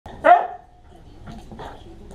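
A dog barks once, loud and short, right near the start, followed by a couple of faint short sounds.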